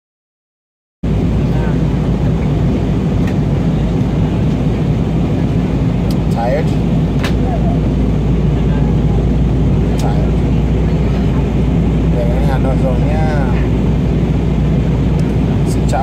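Steady cabin noise of an airliner in flight, the engines and rushing air heard from a passenger seat, starting abruptly about a second in after silence. Faint voices of other passengers come through it now and then.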